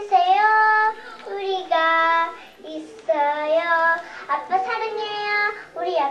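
A young girl sings into a handheld microphone, with no accompaniment. The melody comes in short phrases of long held notes.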